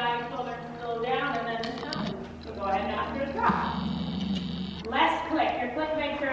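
A person talking indistinctly, with no clear non-speech sound standing out.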